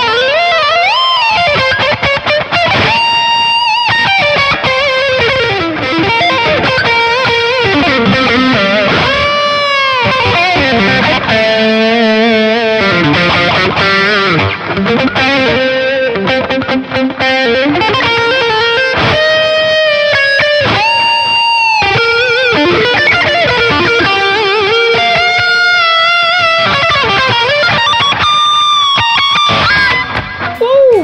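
Electric guitar through a BOSS GT-1000 effects processor on a low-gain overdrive patch, playing lead lines. Fast runs alternate with held notes that are bent up and released and shaken with vibrato, notably about 3, 9 and 19 to 22 seconds in.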